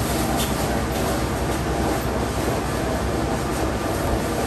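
A steady low rumble with hiss that does not change, with no distinct knocks or clicks.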